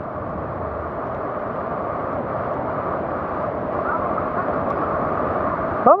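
Steady rush of muddy floodwater in a river swollen by a sudden flash flood.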